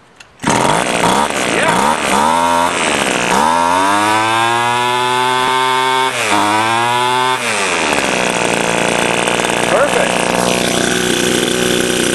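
Stihl string trimmer's small gas engine starting about half a second in and running, its pitch rising and falling as the throttle is worked. It runs now that the stuck carburetor inlet needle has been freed and fuel reaches the carburetor.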